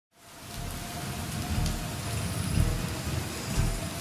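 Steady rain falling on leaves, fading in from silence at the start, with a few deep low rumbles swelling up under it.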